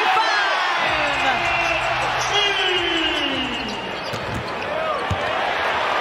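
Basketball arena sound during play: steady crowd noise with short, high sneaker squeaks on the hardwood court and scattered shouts.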